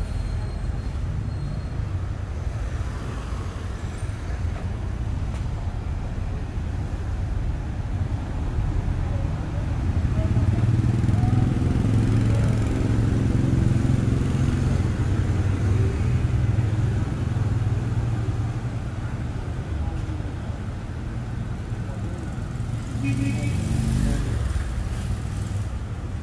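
City street traffic dominated by motorbike and scooter engines running and passing. A louder, closer engine swells from about ten seconds in and fades several seconds later.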